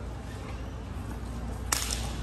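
Steady low background rumble, with a single sharp click near the end.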